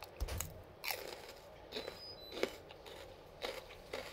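Close-up mouth sounds of chewing raw bitter melon: a series of sharp, crisp crunches as the pieces are bitten down, the loudest about two and a half seconds in.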